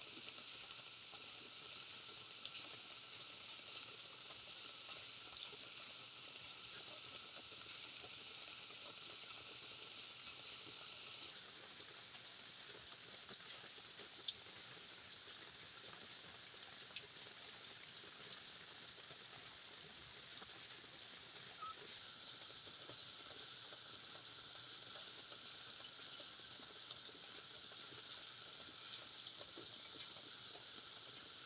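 Faint, steady high-pitched chorus of insects, several tones overlapping and shifting slightly, with a few soft clicks.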